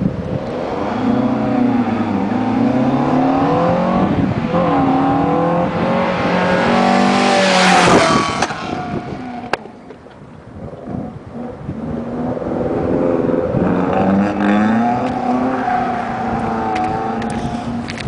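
A Cosworth Vega's twin-cam four-cylinder engine revs hard through an autocross slalom, its pitch rising and falling with the throttle. It is loudest as the car sweeps close by about eight seconds in, then drops away. The engine is heard again later, working up and down through the revs as the car continues around the course.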